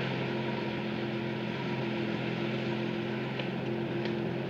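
Steady low drone of an engine running, an even hum with a constant pitch that does not rise or fall.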